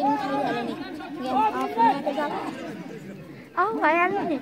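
Spectators' overlapping voices, several people talking and calling out at once, with one louder, high-pitched call near the end.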